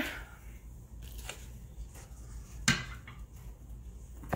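Quiet handling of shopping items over a low steady hum: faint rustles and light clicks, with one sharp knock about two-thirds of the way in as an item is set down.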